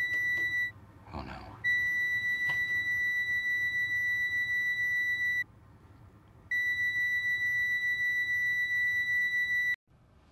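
Handheld detector wand giving a loud, steady, high-pitched electronic tone. It sounds in three long stretches broken by two short pauses and cuts off sharply near the end.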